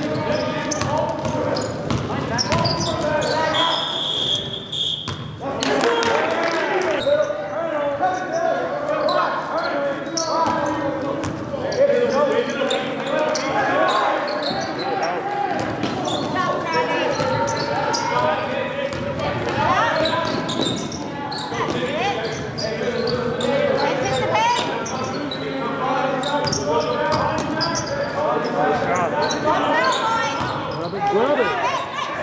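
A basketball bouncing on a gym court during live play, with players' and bench voices calling out throughout, echoing in a large hall. A brief high steady tone sounds about four seconds in.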